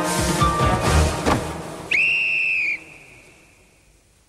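Tense game-show music with drum hits, cut off about two seconds in by one long blast on a pea whistle, the signal that the collecting time is up. The whistle stops sharply and leaves a faint ringing tail.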